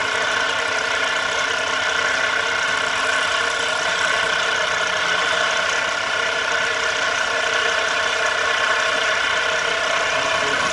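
CNC milling machine's spindle running steadily with the end mill cutting into the metal heat spreader of an Intel Core 2 Duo processor: a constant machine whine over a steady cutting noise.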